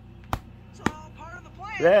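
Cartoon soundtrack played through a screen's speaker: two sharp clicks about half a second apart, then a character's voice starts near the end.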